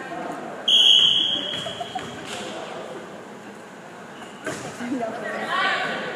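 A referee's whistle gives one steady, high-pitched blast about a second in, the signal for the serve in a volleyball match. About four and a half seconds in there is a sharp knock, and crowd voices rise near the end.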